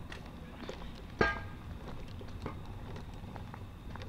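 Footsteps on a paved sidewalk at walking pace, roughly two steps a second, with one sharper, louder click about a second in.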